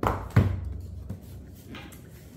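A small cardboard box being picked up and handled on a countertop: a knock at the start, a louder thump about half a second in, then faint handling noises.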